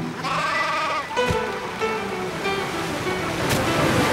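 Cartoon goat bleating once, a falling call lasting under a second, over background music.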